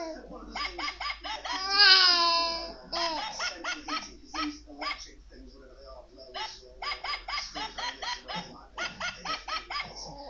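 A young baby cries out in one loud falling wail about two seconds in. Runs of short, quick vocal sounds follow near the middle and toward the end.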